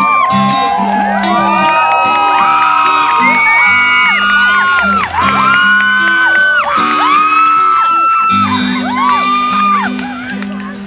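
Audience whooping and cheering, many overlapping voices rising and falling, over the closing acoustic guitar notes of a song.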